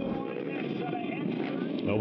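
Steady background noise of people talking, mixed with the sound of quad ATVs.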